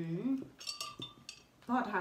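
A ceramic mug clinking as it is set down on the table, with a short ringing tone that lasts under a second.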